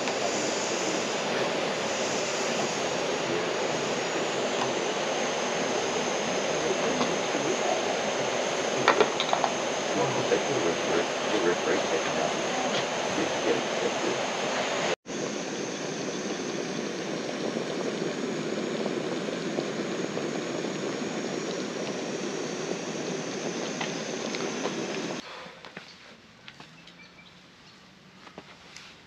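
Jetboil gas stove burner running with a steady hiss as water heats, with a few light knocks about nine seconds in. The hiss cuts off suddenly near the end.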